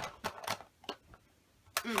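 Makeup brushes and cases clicking and clattering as they are handled: a quick run of sharp taps in the first half second and a single one about a second in.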